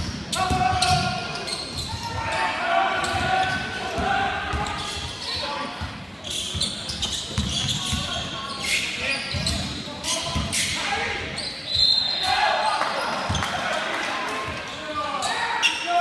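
Basketball game in a gym hall: a basketball bouncing on the hardwood court in repeated thumps, under indistinct shouts and voices of players and spectators.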